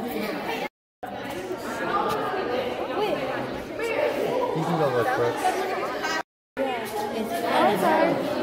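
Indistinct chatter of several people talking in an echoing indoor hall, broken twice by short dropouts to silence.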